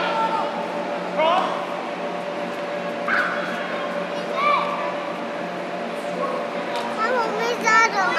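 Young children's brief, high-pitched shouts and calls, a few seconds apart, from players on an indoor soccer pitch, over a steady low hum.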